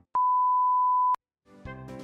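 A steady, single-pitch test-tone beep of the kind played with TV colour bars, edited in as a sound effect; it lasts about a second and cuts off abruptly. After a brief silence, background music starts near the end.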